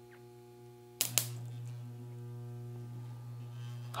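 Microwave oven transformer humming at mains frequency; about a second in there is a sharp click as its two-turn secondary is shorted, and the hum gets clearly louder as the transformer drives around 150 amps through the shorted turns.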